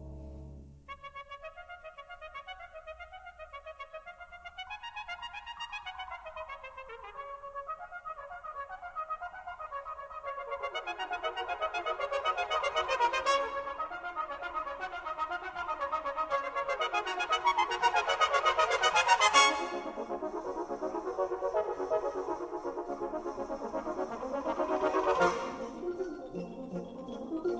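Championship-section brass band playing a passage of quick repeated figures that builds steadily to a loud climax about three-quarters of the way through. After the climax a high, sustained metallic shimmer from the percussion carries on under the band, swelling just before the end.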